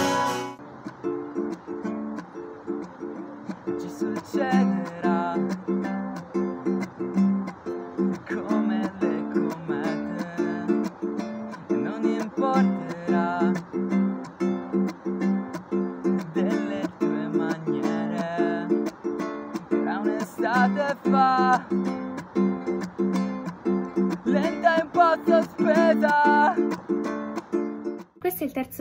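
A small acoustic string instrument, ukulele-sized, played in a steady repeating rhythm of plucked chords, with a voice singing a wavering melody over it in several stretches.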